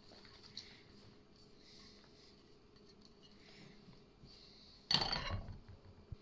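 Faint handling sounds of chopped cabbage going into a plastic mixing bowl of cut vegetables. A short, louder rustle and knock starts sharply about five seconds in.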